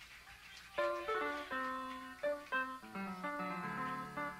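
A guitar picking a quick series of single notes, starting about a second in after a quiet moment, between songs at a live rock show.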